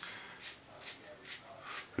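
Razor scraping through lather and stubble along the jaw line: about four short, scratchy strokes, roughly two a second.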